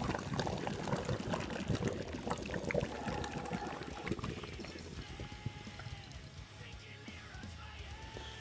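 Brewed coffee draining from a Fellow Duo steeper's filter chamber into its glass carafe: a splashing trickle of liquid that fades as the flow slows.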